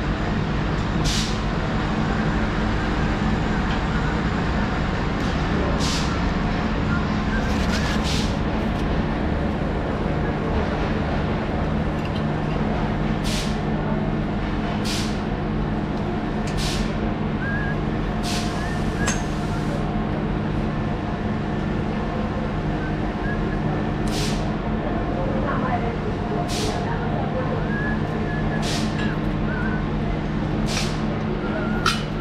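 Steady low hum of trains standing at a railway platform, with about a dozen short, sharp hisses of air at irregular intervals, one of them longer, lasting over a second.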